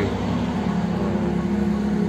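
An engine running steadily, giving an even low drone with a constant pitch.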